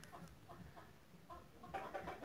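Faint series of short bird calls, about two or three a second, with a slightly louder one near the end.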